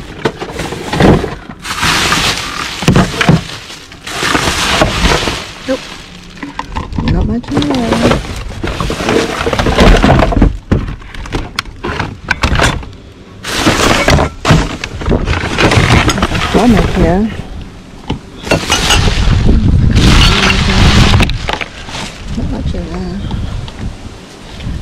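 Rummaging by hand through junk in a dumpster: plastic bags and wrapping rustling and crinkling, objects knocking and clattering against each other in irregular bursts that start and stop.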